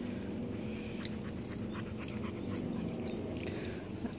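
Dogs at play outdoors, panting and moving about at a steady low level.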